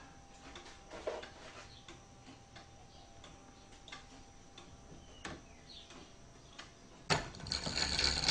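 Wooden gears, arms and levers of a Clayton Boyer Celestial Mechanical Calendar giving faint scattered clicks and ticks as the mechanism is worked, with a sharper click about five seconds in. Near the end a louder, rustling mechanical sound starts.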